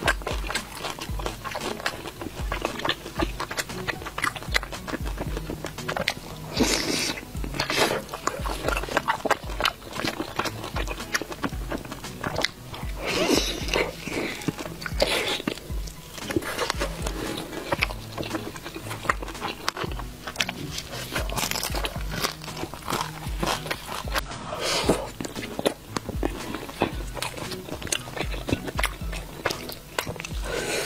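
Close-miked biting and chewing of sauce-covered grilled skewer food, with many wet clicks and smacks throughout. Background music plays under the eating sounds.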